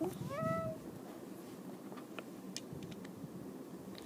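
A child's short, high-pitched squeaky character voice about half a second in, rising and then held like a meow, followed by a few faint clicks of small plastic toy figures being handled.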